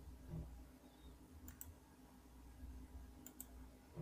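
Near silence: faint room tone with a soft thump just after the start and two quick pairs of faint clicks, about a second and a half and three and a quarter seconds in.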